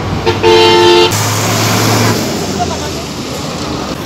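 A road vehicle's horn sounds once, a short steady blast of under a second near the start. It sits over the low, steady running of a vehicle engine and road noise that fade away after about two seconds.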